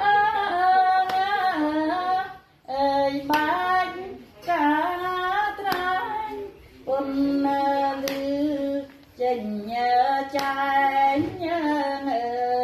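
A woman's solo voice singing a Khmer mohori song, in long held notes with wavering pitch, phrases broken by short pauses for breath. A sharp tap sounds at a steady beat about every two and a half seconds.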